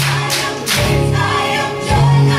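Gospel music with a choir singing over sustained low notes, with two sweeping swells of noise in the first second.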